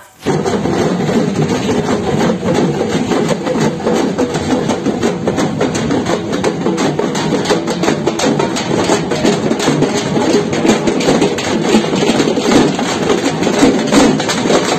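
Many dappu frame drums beaten together by marchers, making a dense, continuous clatter of strikes. It starts suddenly right at the beginning.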